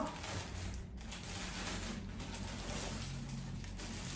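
Clear plastic packaging rustling and crinkling as wrapped items are pulled out of a cardboard box.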